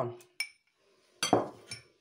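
A small drinking glass clinking twice: first a light, ringing tap of the silicone brush against the glass, then a louder clink as the glass is set down on the tabletop.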